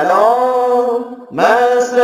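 A man chanting in long, held melodic phrases into a microphone, in the drawn-out recitation style of a sermon. One phrase holds to just past a second in, and after a short break the next phrase begins.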